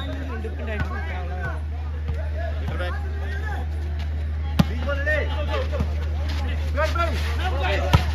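Crowd voices chattering and calling over a steady low hum, with a sharp smack of a volleyball jump serve about halfway through and another ball hit just before the end.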